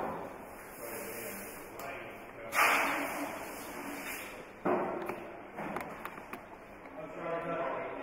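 Two sudden bangs echoing in a large room, the louder one about two and a half seconds in and another about two seconds later, amid faint indistinct voices.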